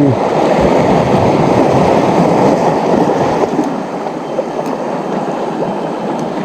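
Sea water washing and churning against shore rocks: a steady, dull rush that eases slightly about halfway through, muffled by the action camera's waterproof case.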